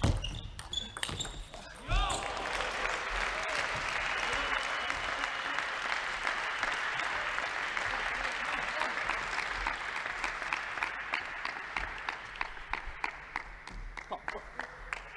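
Table tennis ball hits end a rally in the first two seconds, then shouts and a crowd cheering and applauding for about ten seconds. It thins to scattered separate claps near the end.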